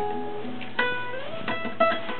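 Acoustic guitar: a held note dies away, then single notes are plucked about a second in and twice more near the end, each left ringing.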